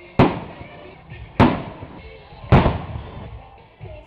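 Three firework shell bursts, sharp bangs a little over a second apart, each fading off over about half a second.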